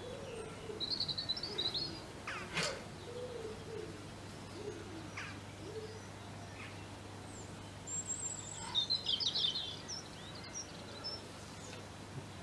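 Garden birds singing: two bursts of high, rapid chirping twitters, near the start and again about three-quarters of the way through, with a brief high whistle and a low, wavering cooing underneath. A single sharp click a little over two seconds in.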